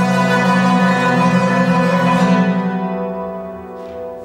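Yangqin (Chinese hammered dulcimer) and marimba playing a duet, a dense mass of struck, ringing notes that thins and fades away over the last second or so.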